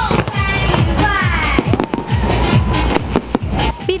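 Fireworks going off, with a run of sharp bangs and crackles from about a second and a half in, over music.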